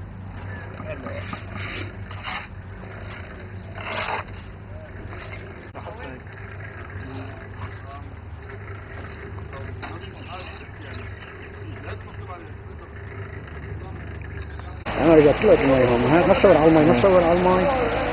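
Building-site ambience: a steady low hum with faint distant voices and an occasional knock while concrete blocks are laid. About fifteen seconds in it cuts abruptly to loud close speech.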